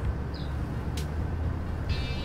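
Low, steady rumble of street traffic, with a single sharp click about a second in.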